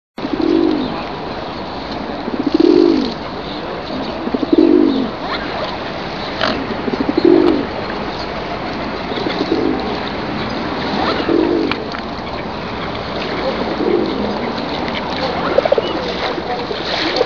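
Feral pigeons cooing: low rounded calls repeating about every two seconds, loudest in the first few seconds, over a steady outdoor background hiss.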